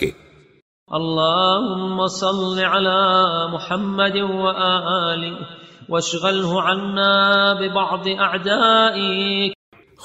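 A voice chanting a line of Arabic supplication in slow melodic recitation: two long phrases of held, wavering notes, with a short break about six seconds in.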